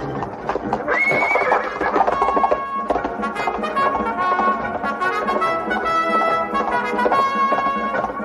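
Fighting horses neighing, with a loud neigh about a second in, and hooves galloping. An orchestral film score with brass plays under them throughout.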